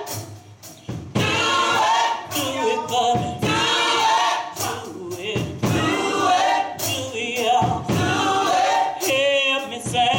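Gospel choir singing together in full voice, with sharp hits cutting through now and then. The singing dips in the first second and comes back in strongly about a second in.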